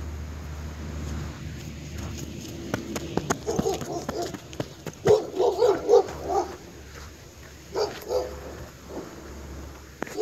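A dog barking in three quick runs of barks, about three and a half, five and eight seconds in, with the middle run the loudest.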